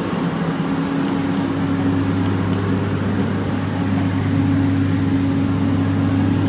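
Aircraft ground power cart's engine running steadily, a constant drone at an unchanging pitch that grows slightly stronger about a second and a half in.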